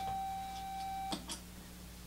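Modular synthesizer sine wave: a single steady pure tone that cuts off about halfway through, leaving only a faint hum.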